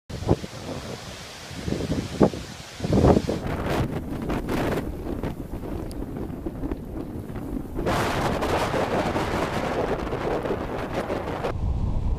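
Strong, gusty storm wind hitting the microphone, with hard buffets in the first few seconds. From about eight seconds in, a steadier wash of churning waves and surf takes over.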